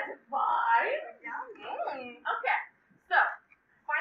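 Speech: a voice talking in short, animated phrases, with brief pauses about three seconds in.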